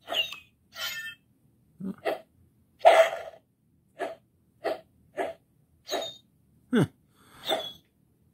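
Dino Fury Morpher toy playing short electronic swishing sound effects from its speaker as it is swung back and forth, its motion-triggered mode on the second setting. About eleven quick swishes, one or two a second, one near the end with a falling pitch.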